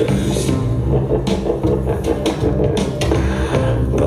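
Hip-hop dance track played loud over the venue's sound system, with a heavy bass line and regular drum hits.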